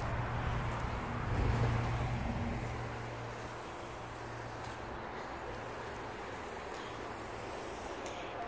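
Steady low hum over a haze of outdoor background noise, a little louder in the first couple of seconds.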